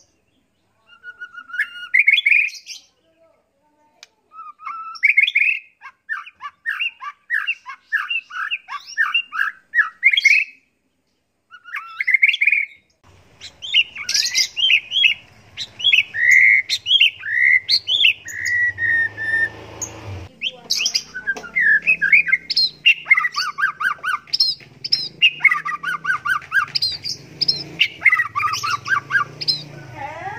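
White-rumped shama singing a long, varied song of quick whistled phrases and fast repeated-note trills. The phrases are broken by short pauses at first and run on almost without a break in the second half.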